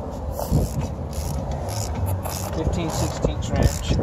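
Metal hand-tool clicks and clinks from a wrench being worked on a CV axle's hub-end hardware, over a steady low rumble.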